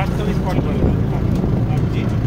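Safari vehicle running along a dirt forest track, a steady low engine and road rumble, with people talking over it.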